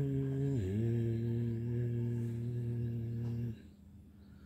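A man humming one low, steady note to calm a guinea pig; the pitch dips slightly about half a second in and the hum stops about three and a half seconds in.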